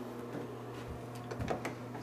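A house's back door being opened: a few small clicks from the handle and latch and a soft thump about a second and a half in, over a steady low hum.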